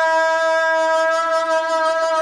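Untrained singing voices holding one long, steady high note in unison, pushed from the throat with no breath support: strained raw-throat singing.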